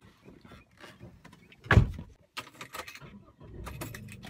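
Car door shut once with a heavy thud about halfway through, amid small clicks and knocks of a camera being handled inside the car.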